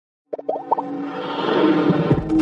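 Intro sound effects over music: a quick run of short pitched blips starting about a third of a second in, then a held music bed that swells.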